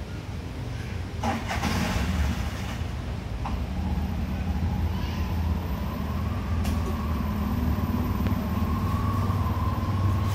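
Steady low rumble of a motor vehicle engine running, with a faint engine whine that rises slowly through the second half and a couple of brief knocks.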